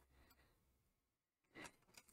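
Near silence, with a faint short click about one and a half seconds in as a plastic-packaged gel pen set is handled.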